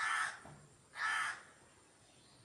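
A bird calling twice outside, two short harsh calls about a second apart.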